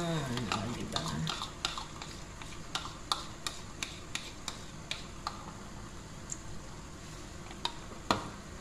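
A spoon scraping and tapping a plastic bowl to empty tomato sauce into a cooking pot: a run of irregular light clicks and taps, a few a second.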